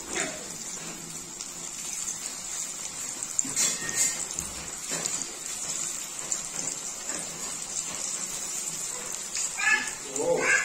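Masala-marinated chicken pieces sizzling in hot oil in a kadai as they are added and fry: a steady hiss with a few sharper crackles a few seconds in.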